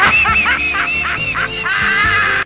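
A quick run of duck-like quacking calls over music.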